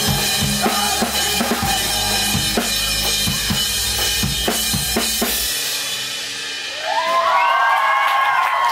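Live drum kit, kick, snare and cymbals, playing with the band's backing until the song ends about five and a half seconds in. Near the end a crowd of young voices cheers and screams.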